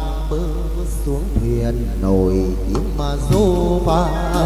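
Chầu văn (hát văn) ritual music: a đàn nguyệt moon lute playing with a singer's long, bending vocal notes.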